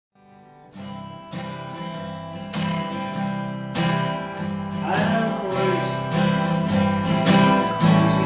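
Acoustic guitar strummed in a steady rhythm, coming in out of silence just under a second in and building in volume.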